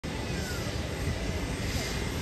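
Airbus A321-211's CFM56 turbofan engines on final approach just before touchdown, a steady jet rumble with a faint high steady whine.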